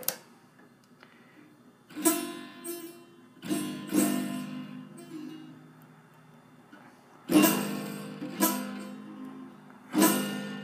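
Acoustic Martin guitar strummed a handful of times through a makeshift pencil-and-rubber-band capo, the chords ringing and dying away between strokes. The chords sound pretty bad: the rubber band is not holding the pencil down tightly enough on the strings.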